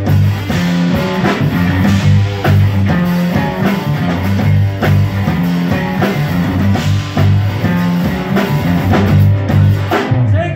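Live rock band playing an instrumental passage: electric guitar, electric bass holding strong repeated low notes, and a drum kit keeping a steady beat.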